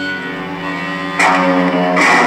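Live garage-punk band playing an instrumental stretch on a rough live recording: electric guitar chords held and ringing, then a loud new chord hit about a second in.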